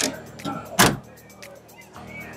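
Daewoo Nexia's trunk lid pushed down and shut: a knock at the start, then a louder thump just under a second in as it closes.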